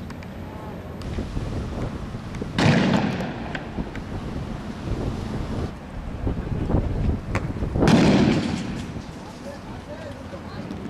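Two loud bangs about five seconds apart, each trailing off over about a second: weapons fired during a street clash.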